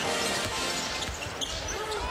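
Basketball arena ambience: a crowd murmurs while arena music plays over the PA, and a basketball bounces on the hardwood floor.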